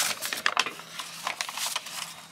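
Sheets of printer paper being handled and laid out on a table: irregular rustling with many short clicks and taps.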